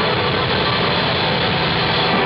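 Live rock band playing loud and without a break: a dense, steady wall of distorted sound.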